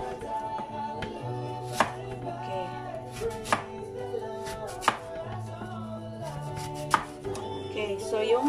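A knife slicing through an apple and striking a plastic cutting board: four sharp knocks roughly a second and a half apart, over soft background music.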